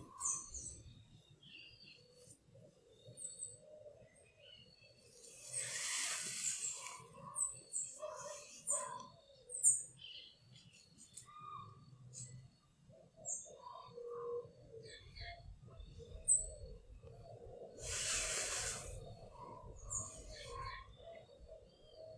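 Garden birds chirping faintly: short high calls scattered throughout, with some lower calls underneath. Two soft rushes of hiss, about a second each, come a quarter of the way in and again near the end.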